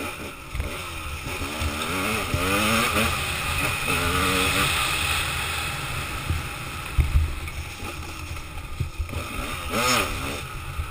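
Dirt bike engine revving up and down as it is ridden, with the pitch rising and falling repeatedly in the first half. A few sharp thumps come about seven seconds in and again near the end.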